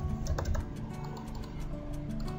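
Computer keyboard and mouse clicks, a quick string of light clicks, over background music with held notes.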